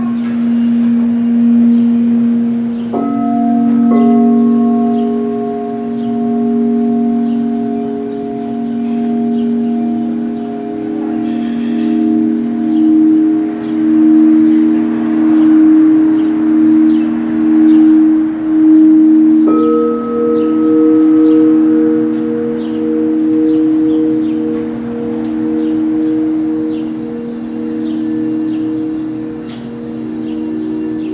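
Singing bowls ringing in long sustained tones that pulse slowly as they sound together. New bowls are struck about three and four seconds in and again about twenty seconds in, each adding a higher tone over the low ones already ringing.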